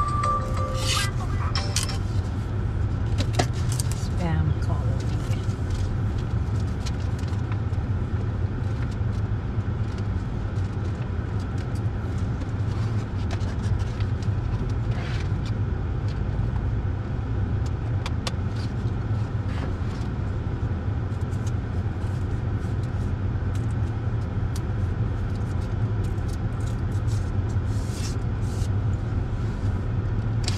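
Steady low rumble of a stopped car idling, heard inside its cabin, with scattered small clicks and rustles. A short steady tone stops about a second in.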